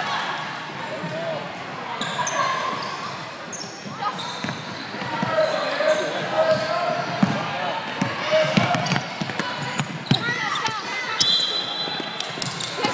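Indoor gym sound during a youth basketball game: scattered voices of spectators and players echo in the hall, with a basketball bouncing on the hardwood floor and a few short high squeaks.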